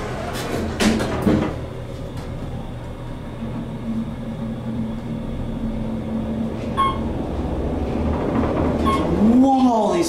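Otis traction elevator doors sliding shut, closing with two knocks about a second in. The car then starts and rides up fast, with a steady rumble and hum in the cab, a held tone in the middle and two short beeps, near 7 s and 9 s.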